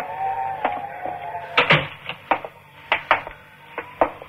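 Radio-drama sound effects of people coming in through a cabin door: a series of sharp knocks and thuds like a door and footsteps, the loudest about one and a half seconds in, over a steady whistling tone that fades out about two seconds in.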